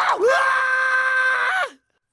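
A cartoon Smurf screaming: one long, high, steady scream that drops in pitch and cuts off abruptly near the end.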